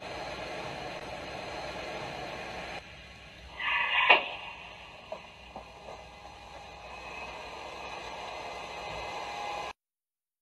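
Steady road and cabin noise of a car on the move, heard through a dashcam, with a short loud burst about four seconds in. The sound cuts off suddenly near the end.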